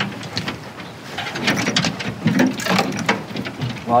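Storage hatch lids on an aluminum boat being opened and handled: a scatter of light clicks and knocks.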